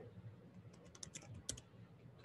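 Faint clicking of computer keyboard keys, a quick run of keystrokes about a second in, the last one the loudest.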